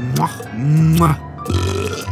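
A cartoon character's voiced burp, low and drawn out, with short vocal noises around it, over background music.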